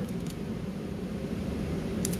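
Steady low background hum, with a faint rustle of tape being pressed down along the edge of a paper wing.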